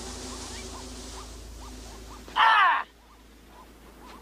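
A loud, short martial-arts shout (kiai) about two and a half seconds in, its pitch falling. Before it there is a steady hiss with faint short chirps.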